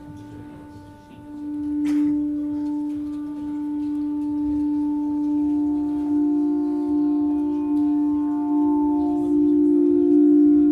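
Live instrumental music opening a song with long sustained held notes: a steady low tone swells in about a second in, and further held notes stack on top of it from about halfway through. A single click sounds about two seconds in.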